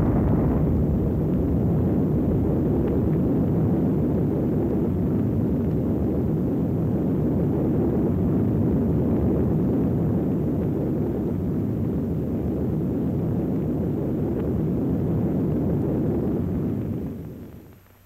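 Long, steady deep rumble of an atomic bomb detonation, with no separate sharp crack, fading away near the end.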